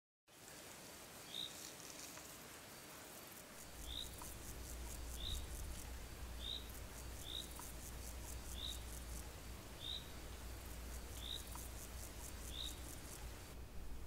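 Faint outdoor ambience: a bird repeating one short high chirp about once a second, over pulsing insect buzzing. A low steady rumble comes in a few seconds in.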